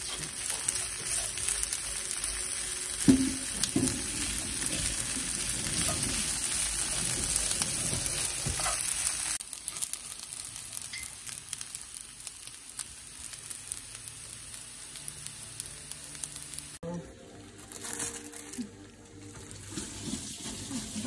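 Rice and chopped spinach sizzling and frying in a nonstick pan as they are stirred with a wooden spatula, with a sharp knock about three seconds in. The sizzle drops to a quieter hiss after about nine seconds.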